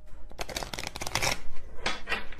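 A deck of tarot cards being shuffled by hand: a quick, crisp run of card flicks, thickest from about half a second to a second and a half in, with a few more near the end.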